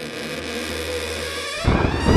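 Produced intro sound effects: a low steady drone under a faint hiss, then a loud rising swell starting shortly before the end.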